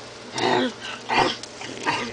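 A person's voice making short wordless zombie-like noises, three bursts in two seconds.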